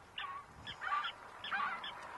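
A flock of birds calling, with short calls following one another in quick succession.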